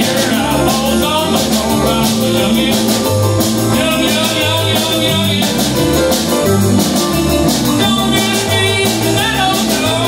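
Live band playing a country-blues song: steel guitar, electric and acoustic guitars and keyboard over a stepping bass line and a steady drum beat.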